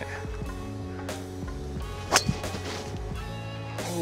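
A full golf swing striking a ball off the tee: one sharp crack about two seconds in, over steady background music.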